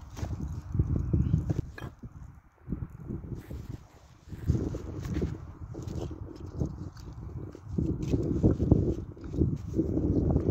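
Wind buffeting the microphone in gusts: a low rumble that swells and drops, easing off briefly a couple of seconds in and building again near the end.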